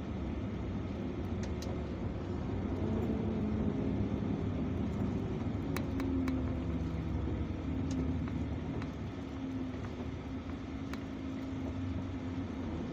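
Heavy truck's diesel engine running under way with a loaded trailer, heard from inside the cab along with road noise; the engine note rises a few seconds in, then holds steady. A few faint clicks.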